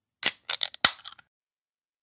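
A short rattle of about five sharp clicks within less than a second, starting a quarter-second in: a transition sound effect as the next item pops onto the screen.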